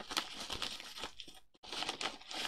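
Plastic bubble mailer crinkling and tearing as it is pulled open by hand, with a brief break about one and a half seconds in.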